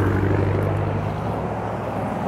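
Road traffic passing close by: a steady low engine drone from a passing vehicle over tyre noise, strongest at the start and easing off slightly.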